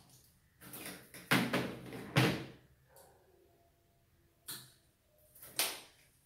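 Several short bursts of rustling and scraping handling noise as the bonsai's branches and its coil of training wire are worked by hand. The loudest bursts come about a second and a half and two seconds in, and two more follow near the end.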